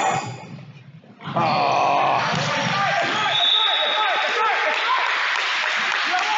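Echoing gym ambience of a basketball game in play: voices, shoes and the ball on a hardwood court. The sound fades away briefly, then comes back abruptly about a second in.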